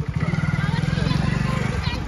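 Motorcycle engine idling close by, a steady low pulsing note that eases off just before the end, with voices talking over it.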